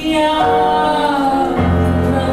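A singer holding a long, loud note into a microphone over instrumental accompaniment, live. Low bass notes come in about a second and a half in.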